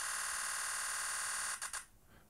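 Nikon Z9's shutter sound firing in a 20 frames-per-second continuous burst, a steady buzz for about a second and a half. Then a few separate clicks as the buffer fills and the frame rate drops.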